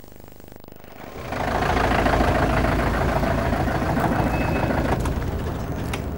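Ambulance engine starting up about a second in and then running steadily and loudly.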